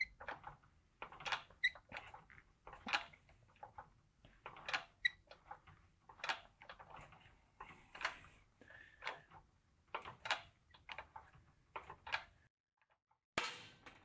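Faint creaks, squeaks and clicks from a hydraulic shop press bending a welded steel test plate, coming irregularly every second or so as the weld starts to bend under load. The sound drops out for about a second near the end.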